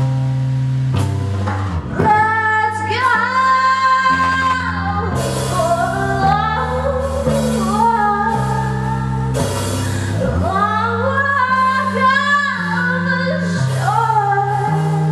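Live band music: a woman singing into a microphone over an electric bass playing held notes that change about once a second. The voice comes in about two seconds in.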